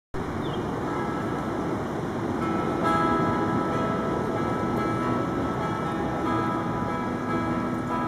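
Steel-string acoustic guitar playing the instrumental intro of a folk song, the notes ringing out and growing louder about three seconds in. Under it runs a steady low background rumble.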